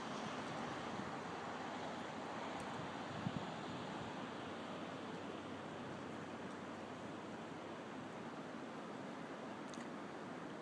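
Faint steady background noise, an even hiss, with one brief faint tick about three seconds in.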